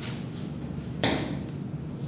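Paper pattern and scissors being handled on a wooden tabletop, with a single sharp knock about a second in.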